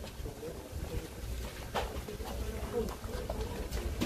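Indistinct low talk from several people nearby, no words clear, over a steady low rumble, with a short click near the middle.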